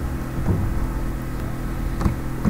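Steady low background hum with an even hiss, and no clear events.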